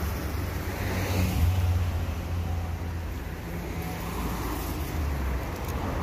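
Low, steady rumble of street traffic, swelling slightly about a second in and again near the end.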